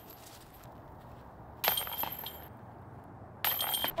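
Metal chains of a disc golf basket jingling and clinking twice: once about a second and a half in, lasting under a second, and again shortly before the end.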